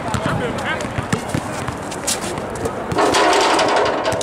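Basketball bouncing on an outdoor hard court as a player dribbles, with people's voices in the background. About three seconds in comes a louder, harsher sound lasting about a second, as the dunk attempt is made.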